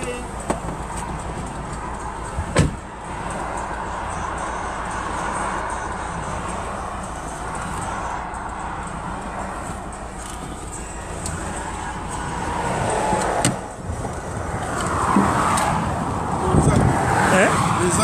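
Road and engine noise inside a moving vehicle's cabin at motorway speed: a steady rumble and rushing. A sharp knock comes about two and a half seconds in and another around thirteen seconds, and voices come in near the end.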